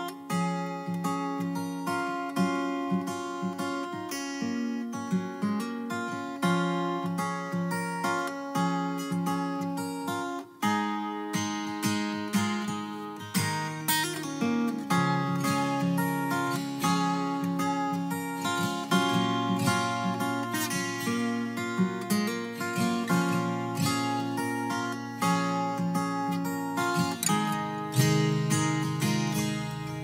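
Acoustic guitar playing a song's instrumental introduction as a run of plucked notes. A deeper, steadier line joins about two-thirds of the way through.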